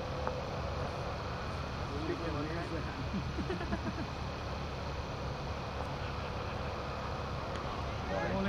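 Distant, indistinct voices of cricket players calling out on the field, most noticeable in the middle, over a steady low background rumble.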